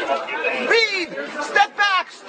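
Speech only: voices talking over one another in a heated argument.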